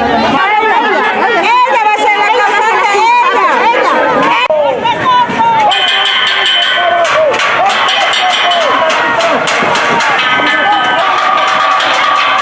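A crowd of people shouting over one another, many voices at once. In the second half, sharp knocks or cracks come in quick succession, and a few short, steady high tones sound.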